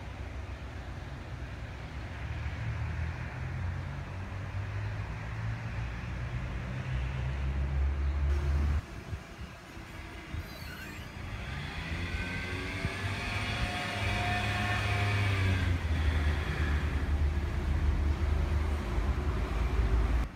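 Steady low outdoor rumble that breaks off suddenly partway through, then a passing motor vehicle whose engine note curves up and back down over several seconds.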